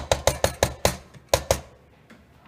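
A spatula knocking against the side of a black non-stick frying pan while stirring penne pasta: about ten quick, sharp knocks with a short ring, stopping about a second and a half in.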